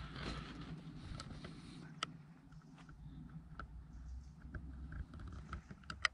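Faint footsteps on a gravel and leaf-strewn path, a few irregular crunches and clicks, over a low steady rumble.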